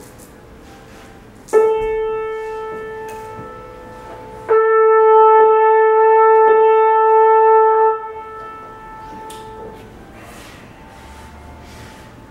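Trumpet with piano: a note starts sharply about a second and a half in and fades away. Then one long, steady note at the same pitch is held for about three and a half seconds, followed by quieter playing.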